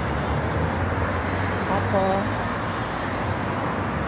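Road traffic on a city street: a steady rumble of passing cars.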